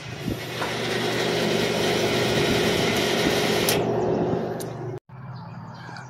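Dixie Narco 501E soda vending machine's vend motor running through a motor-test cycle, a steady mechanical hum that starts about half a second in, holds for about four seconds, then dies away.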